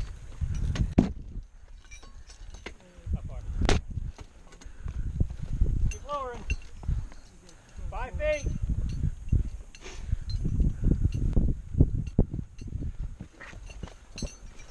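Close handling noise from a rescuer and a Stokes litter being lowered on ropes down a rock face: uneven dull knocks and rustling, with a sharp clink of hardware about a second in and another near 4 s. Brief distant shouted voices come in twice in the middle.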